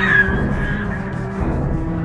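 Dark horror-film score holding a sustained low drone, with a high scream trailing off in the first moment.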